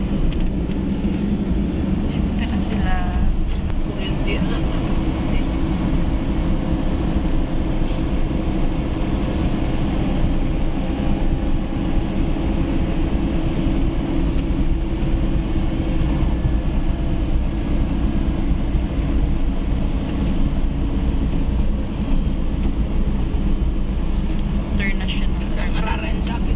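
Steady engine and road noise heard inside the cabin of a passenger van moving at road speed.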